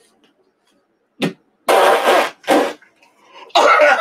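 A man coughing hard and repeatedly after a big hit of cannabis smoke from a glass steamroller pipe. The first second is almost silent while he inhales, then come spaced coughs, and a loud run of coughing near the end.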